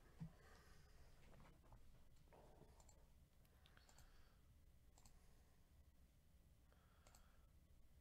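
Near silence: room tone with a few faint, scattered clicks, the sharpest just after the start.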